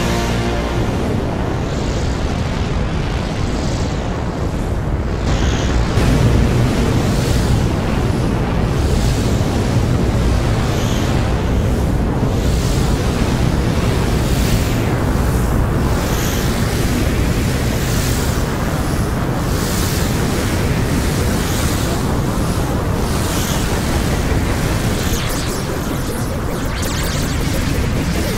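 Novation Summit synthesizer playing a thick, rushing noise-laden texture: a pitched chord fades out at the start, leaving a dense wash with recurring swells in its upper end as the player turns the panel knobs.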